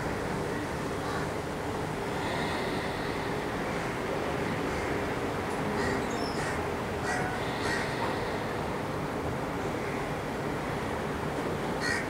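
Outdoor ambience: a steady rushing background noise with a few short bird calls, mostly about six to eight seconds in and again near the end.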